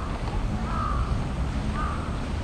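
A bird calling, short arched calls repeated about once a second, over a steady low rumble.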